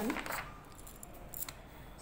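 Pages of a paperback textbook being turned: soft rustling of paper with a light click about one and a half seconds in.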